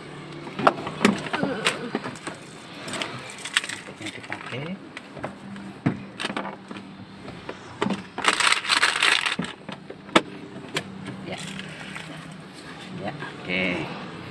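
Car seat belt being drawn out and fastened: the webbing sliding and the metal latch plate and buckle clicking and knocking, with a longer rustle about eight seconds in.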